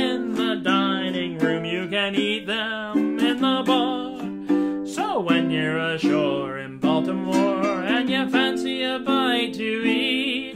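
A man singing a verse of a comic folk song, accompanying himself on a strummed ukulele with a steady rhythm.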